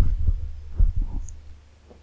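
A run of soft, low thumps in the first second and a half over a steady low hum in the recording.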